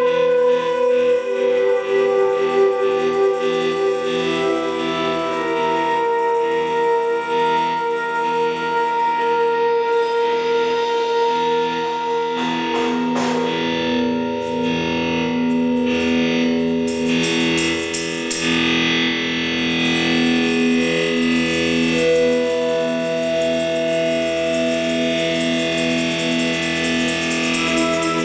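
A live band playing slow, drone-like music: layered electric guitar notes run through effects are held and shift slowly. There are two short spells of rapid fluttering near the middle.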